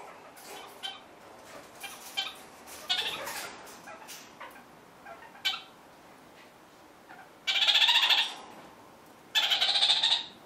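Kakariki nibbling at food with small soft clicks, then two loud, rapid chattering calls, each about a second long, the second near the end.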